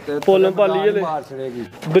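A man's voice talking, loud and close, in quick phrases.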